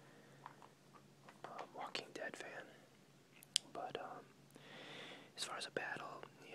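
Soft whispered speech with the rustle of glossy magazine pages being turned and smoothed flat by hand, and a sharp click about three and a half seconds in.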